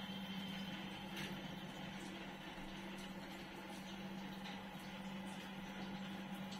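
Quiet room tone carrying a steady low hum, with a few faint clicks.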